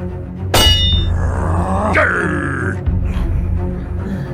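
Background music with an added metallic clang about half a second in, ringing briefly, followed by a drawn-out pitched, sliding sound effect.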